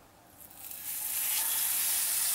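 Spice-marinated Spanish mackerel cutlet sizzling as it goes into very hot mustard oil in a frying pan. The sizzle starts about half a second in and quickly builds to a steady level.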